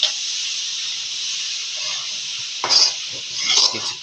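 Spatula stirring and scraping a crumbly flour mixture around a wok on a hot stove, over a steady sizzling hiss. A couple of louder scrapes come in the second half.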